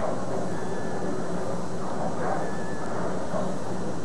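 Bowling alley room noise: a steady low rumble and hum with a faint murmur from the crowd, and no pin crash or sharp impact.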